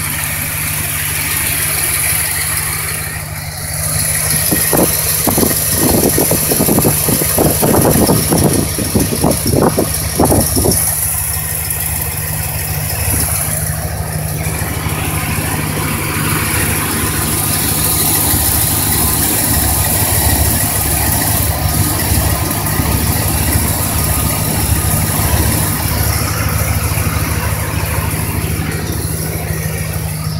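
1983 Dodge D150's 318 V8 idling steadily, heard from the open engine bay shortly after a cold start, its exhaust running through dual Flowmaster mufflers. From about five seconds in, a few seconds of irregular rattling and knocking sit over the idle.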